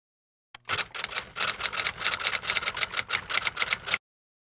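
A rapid, even run of sharp clicks, about seven a second, like typewriter keys, starting about half a second in and cutting off suddenly.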